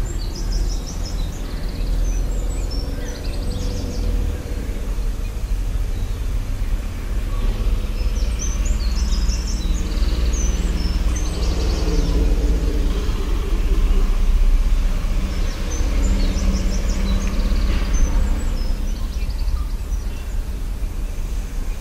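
Birds chirping in short runs of high notes, three times, over a steady low rumble that carries most of the loudness.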